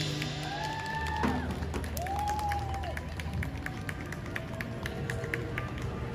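Sparse, scattered clapping from a small street crowd as a drum performance ends, with a couple of arching, rising-and-falling tones in the first three seconds.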